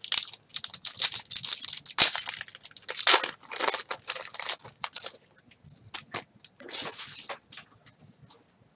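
Plastic wrapper of a baseball card pack crinkling and tearing as it is opened, a dense run of crackles for about five seconds, then a few short crinkles near the end.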